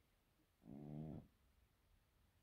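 Sleeping cat snoring once: a single low, even-toned snore about half a second long near the middle, with near silence around it.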